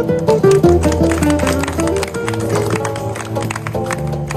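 Two classical guitars, one a seven-string, playing a samba with light hand percussion tapping along; the seven-string's low bass notes come in under the melody about a second in.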